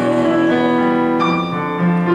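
Digital piano playing accompaniment chords, held and ringing, with a new chord struck about a second in.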